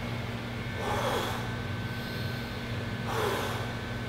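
A man's two forceful breaths out, about two seconds apart, as he crunches on an exercise ball, exhaling hard on each crunch to contract the abs. A steady low hum runs underneath.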